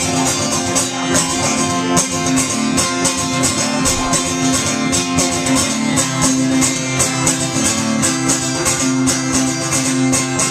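Acoustic guitar strummed in a steady rhythm, an instrumental break with no singing.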